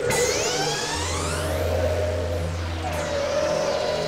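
Experimental electronic synthesizer noise music. It opens with a sudden burst and carries many overlapping glides in pitch, some rising and some falling, over steady held tones. A low drone comes in about a second in and cuts out shortly before the end.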